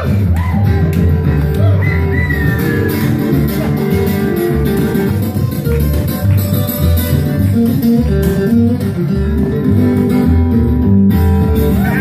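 Live acoustic string band playing an instrumental passage: an upright bass walking a steady low line under picked acoustic guitars.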